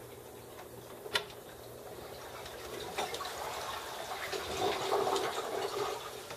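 Toilet flushing behind a closed bathroom door: a sharp click about a second in, then rushing water that builds to its loudest near the end.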